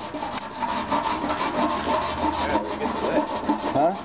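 Rapid, even scraping strokes of a hand tool working metal, several strokes a second, as when a body panel is filed or sanded.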